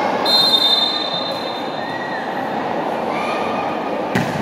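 Referee's whistle blown in one steady blast of about a second, near the start, over the continuous noise of a large crowd of spectators.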